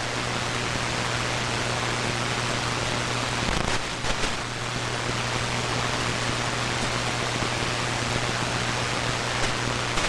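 Static from an HF receiver in AM mode on the 75-metre band: steady hiss with a low hum underneath, heard between transmissions, with a brief crackle about three and a half seconds in.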